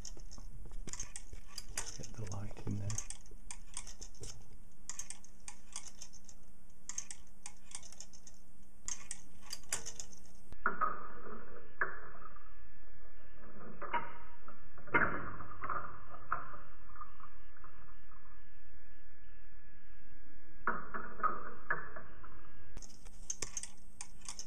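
Irregular light metallic clicks from a homemade Hipp-toggle electric pendulum movement: the toggle and the springy sheet-metal armature being pulled down onto the electromagnet coil. From about ten seconds in, until a couple of seconds before the end, the sound is slowed down, making the clicks duller and drawn out, with a faint ringing tone under them.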